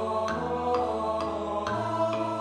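Notation-software playback of a choral arrangement: synthesized choir voices holding chords over piano chords struck about twice a second, with the first-tenor line brought forward for practice.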